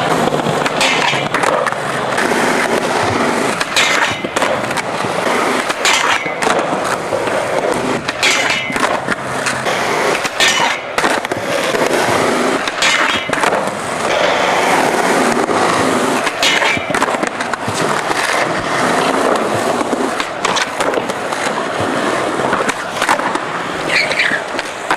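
Skateboard wheels rolling on concrete with a continuous loud rumble, broken every few seconds by sharp clacks of a board striking the ground.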